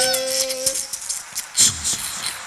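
A man's voice holding one long steady note that breaks off under a second in, then scattered claps and audience laughter, with a thump near the end.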